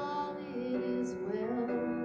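A woman singing a slow worship song into a microphone over piano accompaniment, holding long, wavering notes.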